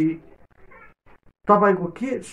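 A man speaking in Nepali, breaking off for about a second of near silence before going on.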